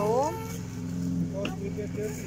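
A steady low hum of a motor running continuously, with a short rising vocal sound from a child about at the start and a few brief voice fragments later.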